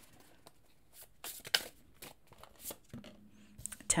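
Tarot cards being handled: a few short rustles and snaps as a card is drawn from the deck and laid on the mat, the loudest a little over a second in.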